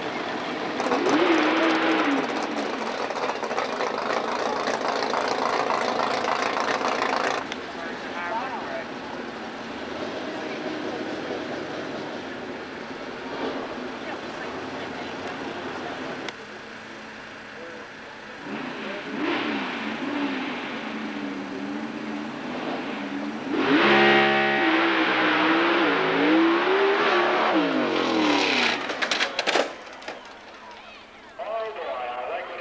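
Pro Stock drag car's V8 engine: loud through a burnout for several seconds, then running more quietly. In the second half it is revved up and down again and again, loudest about two-thirds of the way through while held at the starting line, ending in a few sharp cracks near the end as the car leaves.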